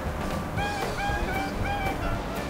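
Background music: a single note picked over and over, about three times a second, starting about half a second in, over a low steady rumble.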